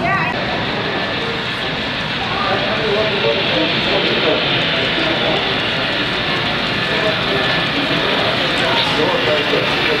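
Steady running rumble of a model train on its track, a Santa Fe F-unit diesel model, under a hum of crowd chatter; the train grows a little louder as it approaches.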